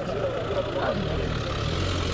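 A car driving past close by: engine hum with tyre noise on the road.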